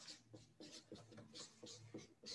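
Marker pen writing on flip-chart paper: a faint, quick run of short strokes, several a second.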